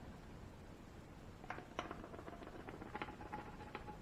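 Faint, scattered clicks and light taps from a plastic funnel being handled at a portable generator's oil fill port, over a low background hush.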